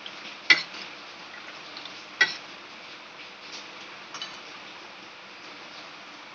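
Metal spoon stirring custard powder and water in a steel bowl, knocking against the bowl with two sharp clinks about a second and a half apart, then a few faint ticks.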